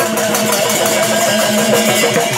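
Live Mising folk dance music: a dhol drum beating a steady rhythm under singing.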